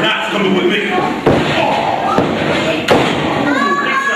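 Two sharp blows landing between wrestlers in the ring, about a second and a half apart, over crowd shouting.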